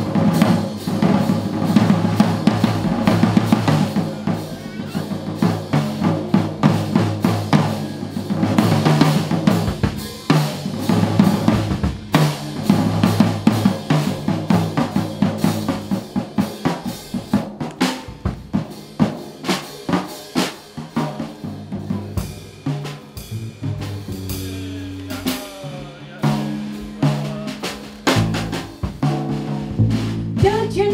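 Drum kit solo in a jazz band: fast snare strokes, rolls and rimshots with bass drum and cymbals, and double bass notes running underneath.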